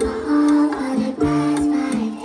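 Live Afrobeats music over an outdoor concert sound system: long held melodic notes, with the bass beat dropped out.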